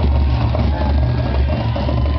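A loud, steady low rumble.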